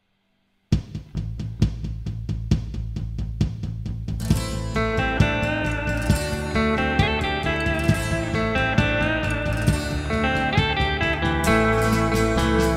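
A drum backing track starts with a steady beat about a second in, and an electric guitar, a Fender Stratocaster, comes in playing over it about four seconds in.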